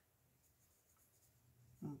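Near silence with the faint scratch of a coloured pencil shading on paper.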